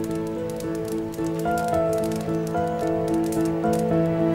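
Soft background music of slow, held notes, with faint crackling running underneath.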